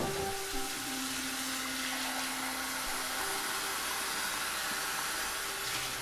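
Tap water running steadily from a faucet, splashing into a glass measuring cup held in the sink.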